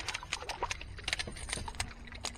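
Hooked redfish thrashing at the water's surface beside the boat: a run of irregular sharp splashes and slaps, over a low wind rumble.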